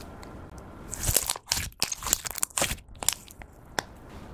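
Pink slime being squished and stretched by hand, giving a dense run of sticky crackles and pops starting about a second in and lasting about two seconds, then a few single pops near the end.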